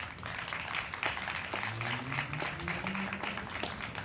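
A crowd applauding, many irregular hand claps.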